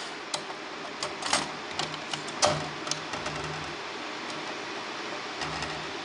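Power-supply cables and plastic connectors being handled and fitted by hand: light, irregular clicks and taps, with a faint low hum underneath.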